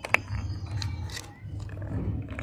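Handling of a plastic lollipop capsule and its clear plastic wrapper: one sharp click just after the start, then light crinkling, over a steady low rumble.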